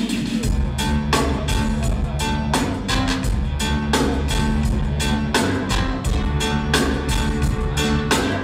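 Band music with a steady beat: bass line, drums and guitar.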